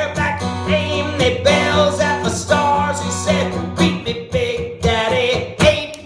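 Acoustic guitar strummed in a steady rhythm, with a man singing over it into a microphone.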